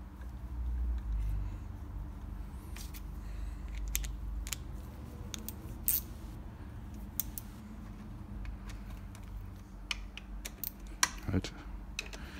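Scattered light metallic clicks and taps of hand tools: a tool picked up from the bench and screws being driven into a scooter's gearbox cover. A steady low hum runs underneath.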